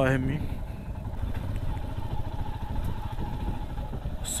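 Motorcycle engine running as the bike is ridden slowly along the road, heard from the rider's position as a steady low rumble with road and wind noise.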